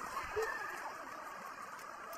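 Faint, steady background noise of a cricket ground picked up by the broadcast's field microphones, with no commentary over it.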